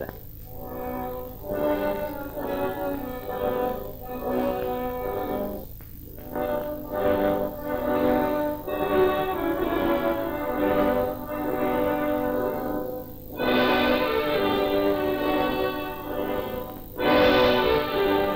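Orchestral music led by brass, swelling louder about 13 seconds in and again near the end.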